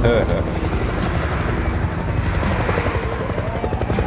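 Helicopter rotor chopping steadily, with a siren starting to wail about two and a half seconds in, rising in pitch.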